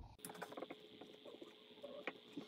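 Faint, irregular taps and scratches of a marker writing on a whiteboard.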